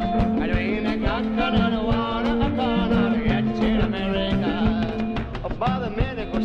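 Live band music: a voice singing over guitar, upright bass and drums, with a steady beat.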